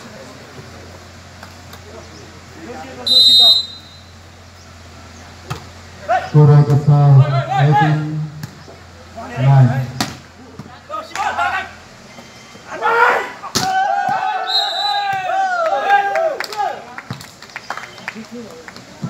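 Volleyball rally: the ball is struck with a few sharp smacks while players and onlookers shout, the calls loudest and most continuous in the second half. A short high whistle blast sounds about three seconds in.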